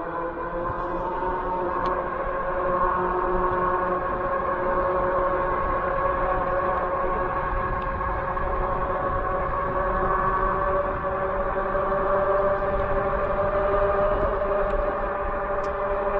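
1000-watt e-bike motor whining steadily under power, its pitch rising slightly as the bike picks up speed from about 18 to 25 mph, over a low rumble of wind and tyres.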